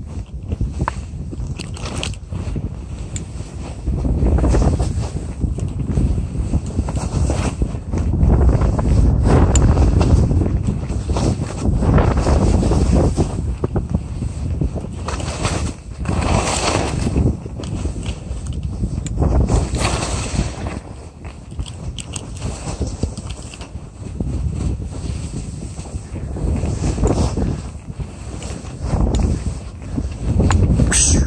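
Wind rushing over a phone's microphone during a slow ski run through soft snow, mixed with the swish of skis in the snow. The rumble swells and eases every few seconds.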